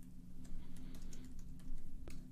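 Typing on a computer keyboard: a quick, irregular run of light key clicks, over a faint steady low hum.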